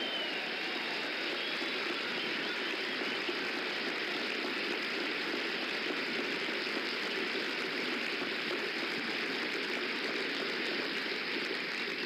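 A crowd applauding steadily without a break, with faint cheering in the first second or so.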